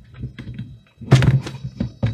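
NEMA 17 stepper motor driven by a TB67S109 microstep driver at a low step rate of about 650 pulses a second, giving a steady low buzz. A loud knock about a second in and a few lighter clicks come from the multimeter being handled.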